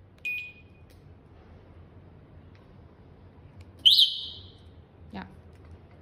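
Electric scooter's wireless anti-theft alarm unit answering presses on its key-fob remote: a short beep just after the start, then about four seconds in a louder, brief chirp that fades quickly.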